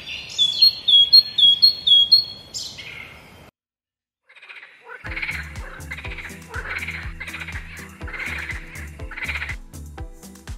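Stock nature sound effects previewed one after the other. First comes a morning birdsong clip of repeated short high chirps for about three and a half seconds. After a brief silence, a night-time swamp ambience follows, with a call repeating roughly twice a second over a low steady hum.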